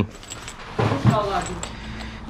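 Light clicking and rattling as a pistol is handled in its soft case, with a short stretch of voice about a second in.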